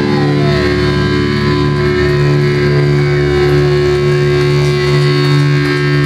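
Electric guitar and bass amplifiers sustaining a loud held drone with feedback, a few whines gliding in pitch over it, and no drums.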